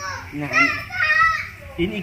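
Mostly voices. A child's high voice calls out in the first part, then a man starts speaking near the end.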